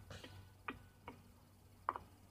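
A few short, sharp ticks, unevenly spaced, about four in all, the last and loudest near the end, over a faint steady low hum.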